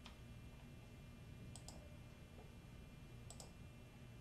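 Faint clicks from operating a computer, over a low steady hum. There is one click at the start, then two quick pairs of clicks a second and a half or so apart.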